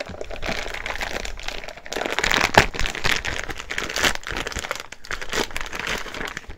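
Clear plastic bag crinkling and crackling as a spool of PLA filament is worked out of it, with many sharp crackles.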